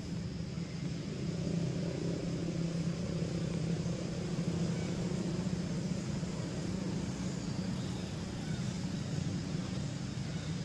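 A steady low mechanical hum, continuous and even throughout.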